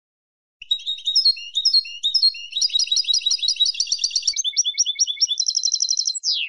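European goldfinch, a female by the recording's billing, giving a fast chattering twitter of repeated high notes and trills that starts about half a second in and runs on without a break. This is the female's chatter used to rouse a silent male to sing.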